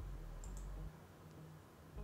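A single faint computer-mouse click about half a second in, selecting a lighting mode, over a low hum that cuts out about a second in.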